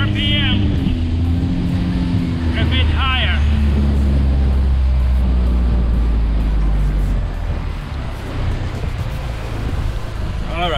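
Mercury outboard motor running at wide-open throttle on a planing aluminum bass boat, with rushing water and wind; about seven seconds in it is throttled back and the sound drops. The motor is turning just over 6,000 RPM, above the recommended 5,750: a sign that the propeller is too small for the boat.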